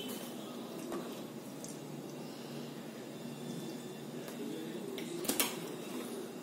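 Faint steady hiss of a gas stove burner as cooking oil heats in an empty non-stick kadai, with a faint click about a second in and two quick small knocks a little past five seconds.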